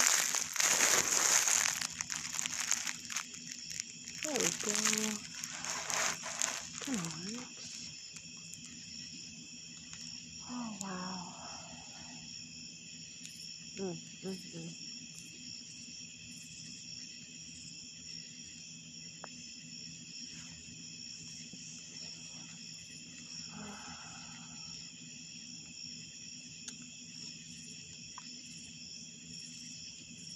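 Phone being handled and propped up: rustling and knocking for the first several seconds. Behind it, and alone after that, a chorus of night insects such as crickets chirring steadily in several high, even tones.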